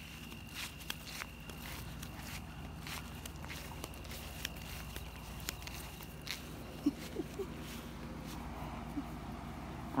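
Footsteps on grass with scattered light clicks and knocks, and a faint steady high tone that stops about six seconds in.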